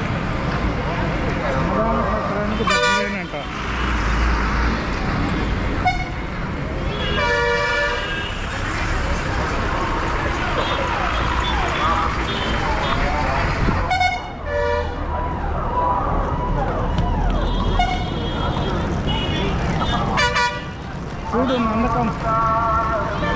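Busy bus-stand street ambience: crowd chatter and the low running of vehicle engines, broken by about four short vehicle-horn toots spread through the stretch, the second one the longest.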